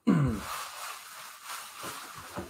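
A man's short sigh falling in pitch, followed by rustling and handling noise that fades slowly.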